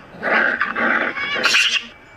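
A pet animal growling in several noisy pulses, ending in a short, harsher, higher-pitched burst near the end.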